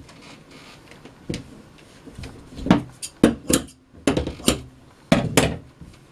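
Irregular light knocks and clicks of things being handled on a table, about ten in all, most of them between a second and five and a half seconds in.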